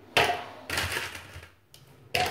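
Ice cubes dropped into a blender jar, clattering in two quick bursts about half a second apart, with a fainter knock later.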